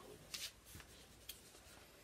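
Faint rustle of paper being handled, one short rustle about a third of a second in and a few light clicks after, in a near-silent room.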